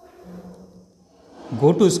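A man's voice, near-quiet room tone for about the first second and a half, then speaking loudly near the end.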